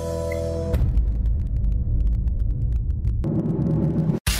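A held synth chord from the music bed cuts off under a second in and gives way to a deep rumbling transition effect, with fast faint crackling ticks on top. The rumble swells near the end, the build-up of a TV show's transition sting.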